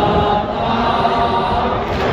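Large crowd of voices chanting together in a Muharram mourning chant, a steady mass of voices in a reverberant space.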